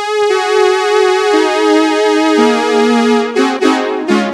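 Casio CZ-101 phase-distortion digital synthesizer playing a slow descending line of bright, overtone-rich sustained notes, each held on as the next one sounds. Near the end, quicker, shorter notes begin.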